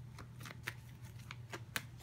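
Tarot cards being handled and drawn from the deck: a quick run of faint, irregular card clicks and flicks.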